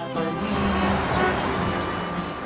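City traffic: a steady wash of road noise.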